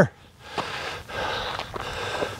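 A man breathing hard in two long, breathy exhalations while climbing a steep uphill trail.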